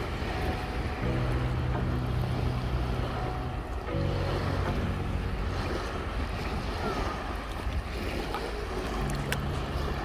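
Slow, sustained relaxing-music chords that change a few times, about a second in, near four seconds and near nine seconds, laid over a steady wash of shallow sea water lapping around the camera.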